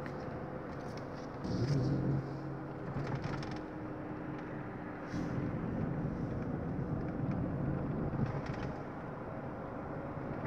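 Car engine and road noise heard from inside the cabin while driving, a steady hum with a louder swell about a second and a half in.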